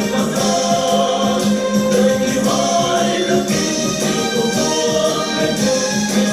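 A Vietnamese army march song sung by a group of women's voices in unison over an instrumental backing with a steady beat.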